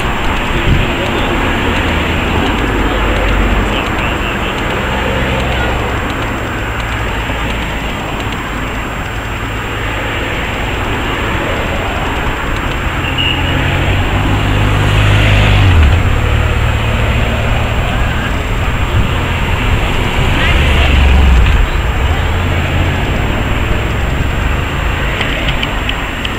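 Race convoy vehicles (cars, a motorcycle outrider and an ambulance) driving past one after another, engine and tyre noise swelling as each goes by, loudest about fifteen and again about twenty-one seconds in.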